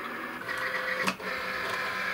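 Cricut Explore cutting machine's motor whirring steadily as its rollers draw the sticky cutting mat in to load it, with one sharp click about a second in.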